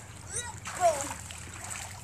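Light splashing of swimming-pool water, with faint voices in the background.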